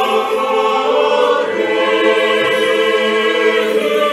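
Choir singing slow chant as background music, with long held notes over one steady low drone note.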